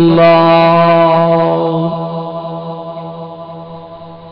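A man's voice holding one long chanted note at the end of a line of a devotional salam, steady in pitch for about two seconds and then trailing off slowly.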